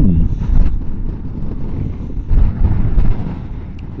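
Wind buffeting the microphone of a moving motorcycle in gusty weather: a loud low rumble that swells and dips unevenly, with the motorcycle's engine and road noise running underneath.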